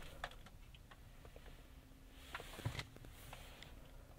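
Near quiet inside a pickup truck's cab: a few faint clicks early on, then a soft thump and rustle around the middle, as the driver handles the controls before the engine is started.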